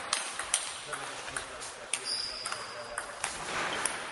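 Table tennis ball being hit back and forth in a rally: about a dozen sharp ticks of ball on bats and table, the loudest about half a second in. A brief high squeak about two seconds in.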